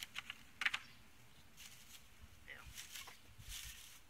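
Plastic cling film crinkling and rustling in several short, faint bursts as it is pulled and wrapped around a plant pot. The loudest crackle comes about half a second in.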